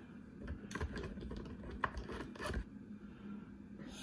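A quick run of light clicks and scrapes from hands and tools working on an opened transceiver, between about half a second and two and a half seconds in.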